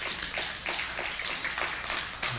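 A congregation applauding briefly, an even patter of many hands clapping.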